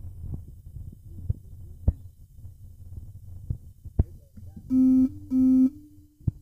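Soft clicks and smacks of someone chewing food over a low room hum, then near the end two short, loud buzzes in quick succession, each a steady low tone under half a second long.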